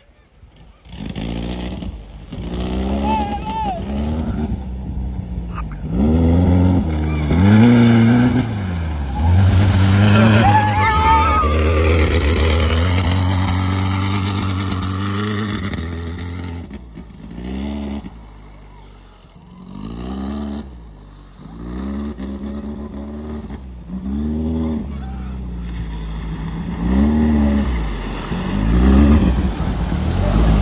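Off-road dune buggy's engine revving up and down repeatedly as it drives through a shallow river, with water splashing and spraying around its wheels. The engine drops back briefly past the middle, then revs hard again near the end.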